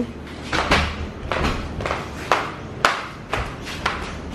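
Footsteps in flip-flops going down tiled stairs: the rubber soles slap against the tile about twice a second, in an uneven rhythm.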